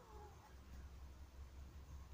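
Near silence: a faint low rumble, with a brief faint call right at the start whose pitch glides up and then down.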